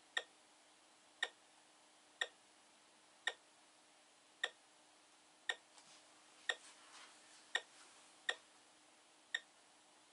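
Short, sharp beeps from the Science Fair Microcomputer Trainer, about one a second at uneven spacing, as each value of the data is loaded into it from the TI 99/4A. A faint steady hum lies beneath.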